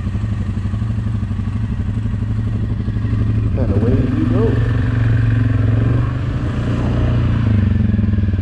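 Quad ATV engine running while riding, picking up revs and getting louder about three seconds in, with its pitch swinging up and down briefly after that.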